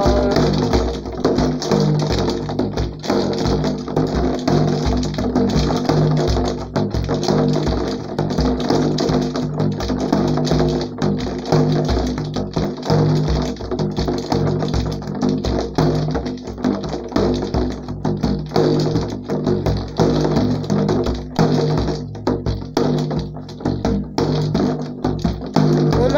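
Instrumental interlude of a Turkish ilahi: a hand-played frame drum (def) beaten in a quick, steady rhythm over sustained backing tones.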